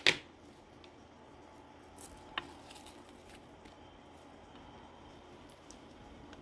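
Sliced onions being dropped from a plate onto raw meat in a steel pot: faint soft handling sounds with a few light clicks, one sharper click about two and a half seconds in.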